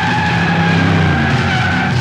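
A long, loud, high screech that slides slightly down in pitch over about two seconds, a sound effect in a film's soundtrack, heard over a dense low rumble.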